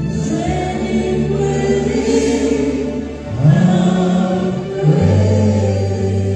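Live worship music: voices singing a slow praise song over guitar, with held low notes that change pitch a few times.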